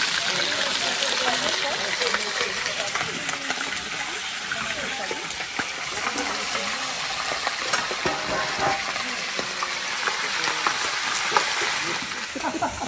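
Chicken pieces sizzling as they brown in a metal pot over a gas flame, stirred with tongs, with a few light clinks of metal on the pot.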